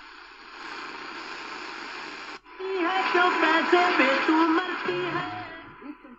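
AM radio on the C.Crane CC Radio EP Pro: hissing static for a couple of seconds, a brief dropout, then the 530 kHz station CHLO comes in really strong through the radio's speaker with its program audio, fading a little near the end.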